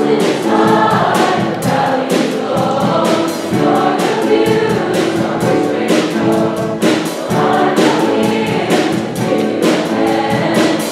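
A large choir of mixed voices singing a pop song in harmony, accompanied by piano and a drum kit keeping a steady beat.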